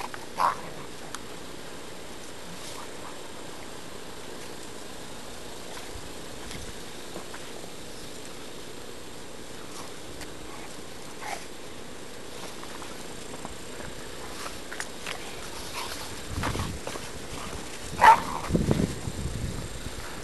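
Two dogs, a Shetland sheepdog and an Australian cattle dog, play-fighting. It is mostly quiet with faint hiss, then near the end come low growls and a short, sharp, loud vocal sound.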